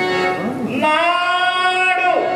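A high voice singing a drawn-out line of verse, gliding at first and then holding one long note from about a second in, over a faint steady instrumental tone.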